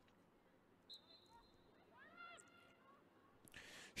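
Near silence, with a faint thin high tone starting about a second in and a short faint rising call a little after two seconds.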